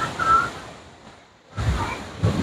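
Wind gusting on a clip-on microphone in irregular low rumbles, with surf behind. A brief high tone sounds near the start.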